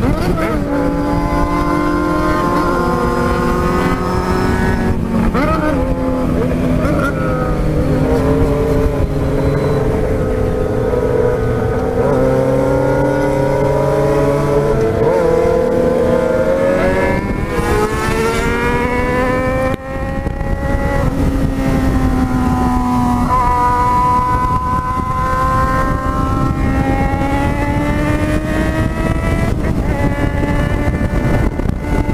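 Yamaha XJ6's 600 cc inline-four engine under way, its pitch rising and falling with the throttle, with wind rush. A strong climb in revs comes about seventeen seconds in, and a brief drop in sound just before twenty seconds, then the engine settles into steady running.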